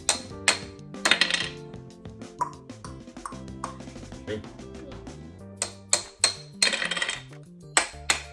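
Plastic toy hammers tapping plastic ice blocks in a Don't Break the Ice game tray: sharp clicks, a few in the first second and a quick run of them near the end, over steady background music.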